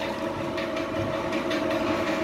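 Steady mechanical hum: two even held tones with a faint light ticking a few times a second over them.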